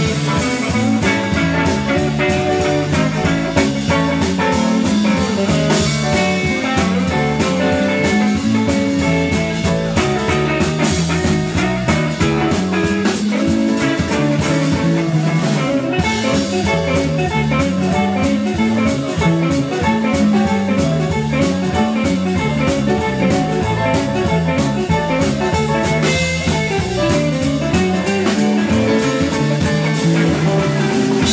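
Live blues band playing an instrumental passage with no singing: electric guitar, organ, bass and drum kit.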